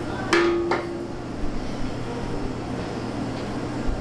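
A sharp clink of kitchenware on the counter about a third of a second in, ringing briefly, with a second lighter tap just after. A steady low hum runs underneath.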